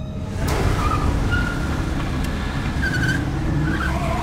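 Cars driving fast, their engines running loud, with several short tyre squeals; the sound comes in suddenly about half a second in.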